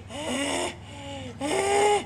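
A man's voice making two drawn-out non-word vocal sounds, each about half a second long, one just after the start and one in the second half.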